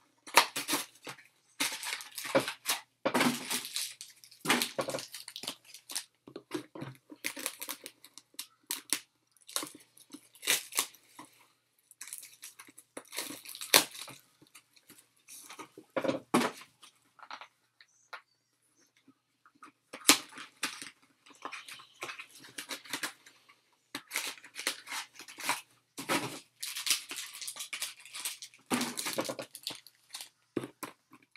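Foil trading-card pack wrappers crinkling and rustling as they are handled and stacked, in irregular bursts with a short pause about two-thirds of the way through.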